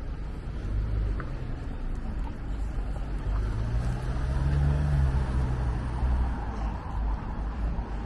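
Street traffic: a car engine's low hum swells to a peak about halfway through and fades away, over a steady low rumble.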